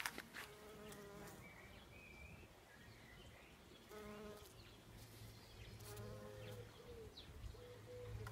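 A bumblebee buzzing faintly as it flies among rhododendron flowers, in a few short bouts: about a second in, around four seconds in and around six seconds in.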